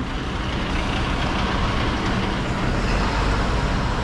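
A bus driving by close at hand, its engine and tyres making a steady rumble.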